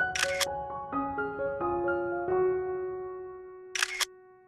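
Calm instrumental background music with slow, held notes, overlaid by a quick crisp clicking sound effect at the start and again just before the end.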